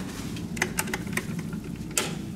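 A handful of short, sharp clicks over a steady low hum.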